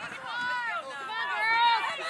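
Several high-pitched voices shouting and calling out at once across a soccer field, overlapping, loudest about one and a half seconds in; no words can be made out.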